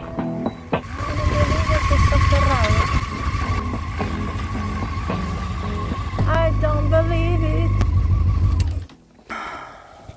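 Honda Hornet motorcycle riding, with heavy wind rumble on the chest-mounted phone's microphone and background music over it; the rumble steps louder about six seconds in and cuts off suddenly near the end as the bike stops.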